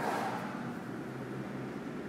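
Steady background hum and hiss of room noise, with a faint low tone running under it.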